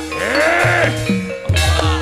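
Javanese gamelan playing for a wayang performance: held metallophone tones under a voice singing a sliding, wavering line in the first half. About a second and a half in, a sharp struck clash lands over a low, sustained boom.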